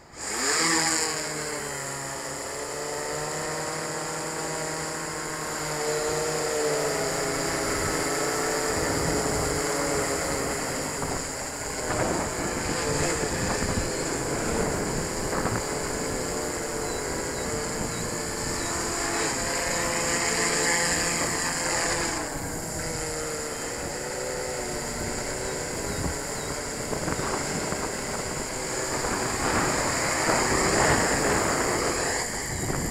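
Yuneec Q500 quadcopter fitted with float pontoons: its four motors and propellers start abruptly and run at flying speed, the pitch of the propeller hum drifting up and down without settling as the motors change speed in flight.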